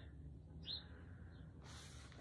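Quiet room tone with one faint, short high chirp a little under a second in and a fainter one shortly after.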